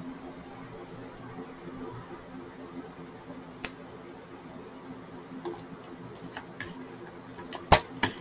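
Quiet room tone: a steady low hum with a few faint, scattered clicks and a sharper click near the end.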